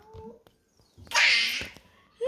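A young child's short, high-pitched squeal about a second in, preceded by a faint, brief vocal sound at the start.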